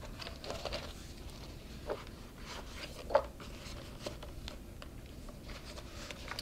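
Quiet rustling and small scrapes of a needle and linen thread being drawn through punched holes in a paper pamphlet binding, with paper being handled and one sharper click a little past three seconds in.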